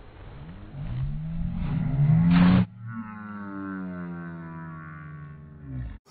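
Audio slowed far down for a slow-motion replay: a human voice stretched into deep, drawn-out groaning tones that slide slowly lower in pitch, with a loud rushing noise a little before the halfway point.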